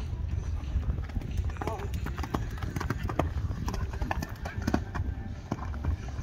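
Hoofbeats of a horse cantering on a sand arena, a string of irregular footfalls.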